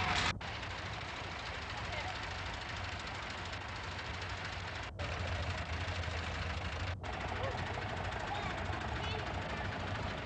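Farm tractors and other vehicles running past with indistinct crowd voices, on old film sound with a steady low rumble and hiss. The sound cuts out for an instant three times.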